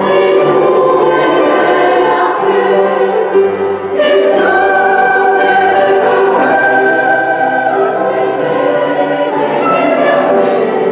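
Mixed choir of women's and men's voices singing classical sacred music in a stone church, in sustained chords. After a brief dip about midway, a high note is held through most of the second half.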